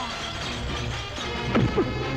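Film fight sound effects over background score: a crash of smashing debris as a body goes through a partition, then quick falling swishes and whacks of blows near the end.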